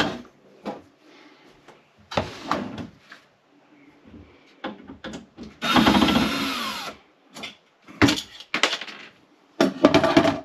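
Wooden dresser drawers pulled out on their metal slides and set down with knocks and rattles. Around the middle a cordless drill runs for about a second and a half, its pitch falling as it winds down, taking out the drawer-slide screws.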